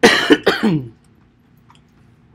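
A man clearing his throat in two quick, loud goes, over within the first second.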